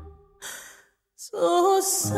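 A song recording at a pause: the held note dies away, a soft breath is heard, there is a moment of silence, and then a female singer's voice comes back in alone with vibrato in the second half.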